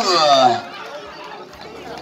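Speech: a man's voice ending with a falling pitch in the first half second, then quieter background chatter of several voices.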